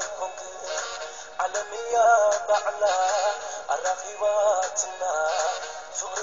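Eritrean dance song: a lead vocal repeats a short, wavering phrase over the backing music. It sounds thin, with almost no bass.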